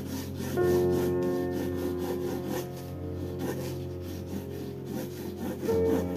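Graphite pencil scratching across watercolour paper in quick, repeated sketching strokes, over background music of sustained chords that change about half a second in and again near the end.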